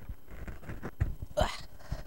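Low thumps of a person moving about and stepping away near a lectern microphone, with a short, sharp intake of breath about one and a half seconds in.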